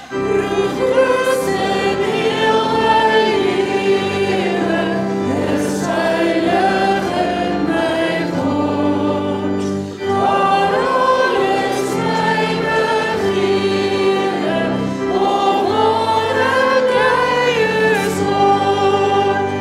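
A church congregation singing a worship song together in Afrikaans, in long held notes, with a short break between lines about ten seconds in.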